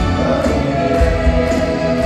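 Live rock band playing full-out with lead and backing vocals singing held notes over a steady drum beat, heard from the audience through a stadium PA.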